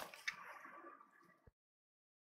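Faint room noise with a few soft clicks, fading away, then the sound cuts out to complete silence a little past halfway through.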